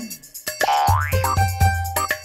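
Upbeat comedy background music with a steady beat, with a comical sound effect that rises in pitch about half a second in.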